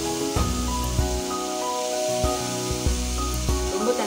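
Background music over the steady sizzle of diced potatoes frying in a pan.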